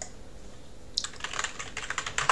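Computer keyboard typing: a single click at the start, then a quick run of keystrokes from about a second in as a password is entered at a login prompt.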